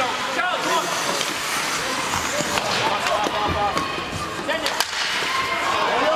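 Rink-side spectators talking and calling out, many voices overlapping, with several sharp clacks of hockey sticks and puck on the ice.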